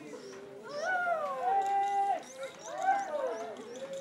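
A mourner wailing aloud in grief: a crying voice in long drawn-out phrases that rise and fall in pitch, with a held note in the middle.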